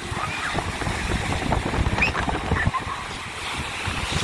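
Ocean surf breaking and washing in, with wind buffeting the microphone in uneven gusts.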